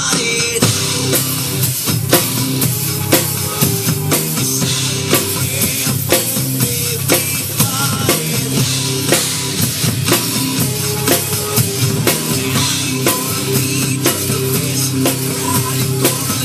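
Acoustic drum kit played live in a steady rock beat of kick, snare and cymbals, over rock backing music with a sustained bass line.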